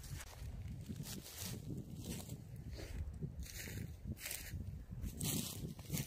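Footsteps crunching through thin snow and dead bracken as irregular short steps, over a low wind rumble on the microphone.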